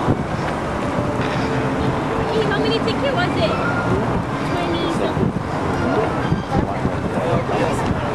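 Steady din of a tow boat's engine, with wind on the microphone and indistinct voices of the crowd.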